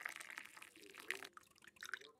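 Faint sound of water being poured into a mug over a tea bag, with a couple of light clicks.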